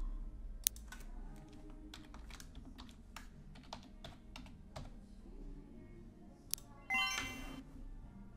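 Quiet, scattered computer keyboard clicks, irregularly spaced, with a brief electronic chime about seven seconds in.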